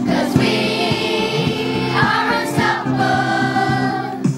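Children's choir of junior school pupils singing together, holding long sustained notes.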